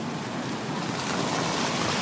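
Steady rushing street noise, slowly growing louder.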